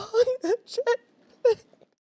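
A man's voice in about five short, broken, wailing sobs, the last about a second and a half in: mock crying, a line of a song delivered in a "grief" mood.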